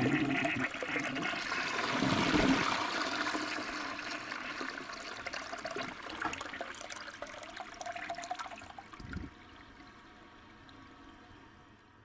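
A toilet flushing. The rush of water is loudest about two seconds in and slowly dies away, with a low thump near nine seconds followed by a fainter water sound that fades out.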